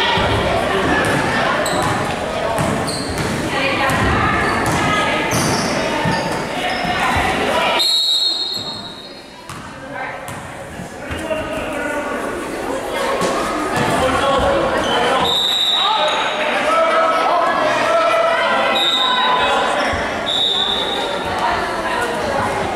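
Basketball bouncing on a hardwood gym floor, with voices echoing around a large gym. The sound drops away for a couple of seconds about eight seconds in.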